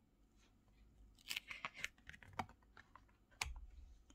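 Large oracle cards being handled: faint sliding and rustling of card stock as one card is moved off the front of the deck, with a sharper click near the end.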